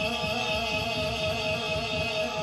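A bellows-blown instrument sounding a steady held chord of several pitches while its bellows are pumped, heard through a TV speaker. It shows that the old instrument still works.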